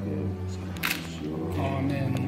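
Church music with long, steady low held notes, and one short sharp hissing click a little under a second in.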